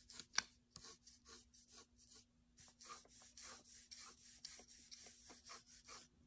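Pencil scratching on paper in short, quick strokes while drawing light hatch marks: a faint, irregular run of brief scratches, several a second.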